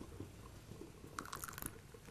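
Faint sounds of eating at a meal of flatbread and tea: quiet chewing and small ticks of hands at the plates, with a brief cluster of light, sharp clicks about a second and a half in.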